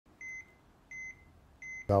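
Bedside patient monitor beeping: three short, high beeps evenly spaced about 0.7 s apart, the monitor's pulse tone sounding with each heartbeat.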